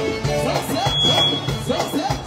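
Live Sudanese band music with a steady beat and a melody line. About halfway in, a thin steady high tone sounds for about a second.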